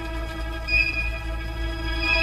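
Orchestral film score holding one long, soft, steady note, with a higher tone joining about two-thirds of a second in.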